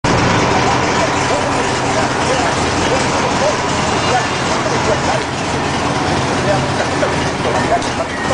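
Touring motorcycle's engine running steadily at idle in neutral, with indistinct voices in the background.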